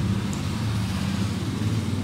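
Low, steady rumble of a motor vehicle engine.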